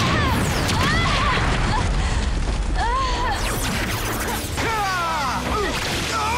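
Explosion and fire sound effects from a TV fight scene, with a steady low rumble and short pained shouts and yelps from the fighters caught in the blasts.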